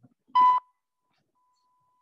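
A short, loud electronic beep pitched at about 1 kHz, followed by two fainter long steady tones at the same pitch.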